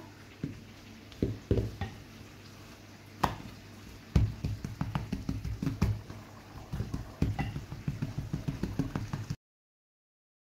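A wooden rolling pin and hands working a round of bread dough on a work surface: irregular low, dull knocks and thumps, with one sharp click about three seconds in and a quicker run of thumps through the second half, the sound cutting off suddenly just before the end.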